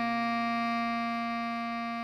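Bass clarinet holding one long tied melody note (written C5) over a sustained chord, fading slowly.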